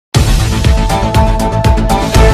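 News-channel intro theme music, electronic with a steady beat and heavy bass, starting abruptly just after the start.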